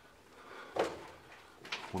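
A single footstep on a loose rock-chip floor about a second in, with a fainter one near the end, in a quiet rock tunnel.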